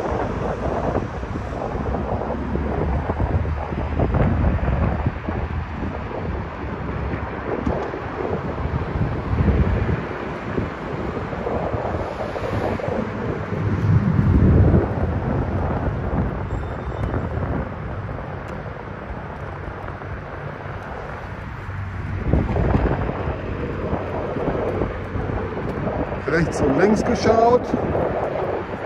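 Wind buffeting a phone's microphone as it rides along the road, a gusty low rumble that rises and falls, loudest about halfway through.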